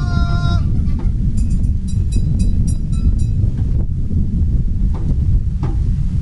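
Heavy rain and wind making a steady low rumble on the microphone. A drawn-out held vocal note from the stage ends about half a second in, and a few faint taps follow.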